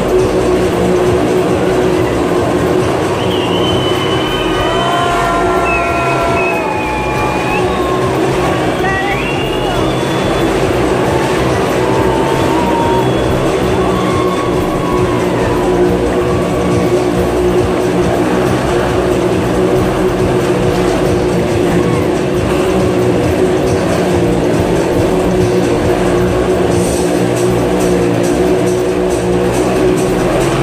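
Motorcycles running inside a steel-mesh globe of death, their engines going steadily under loud show music.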